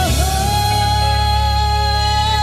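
A woman singing one long held note into a microphone over a karaoke backing track.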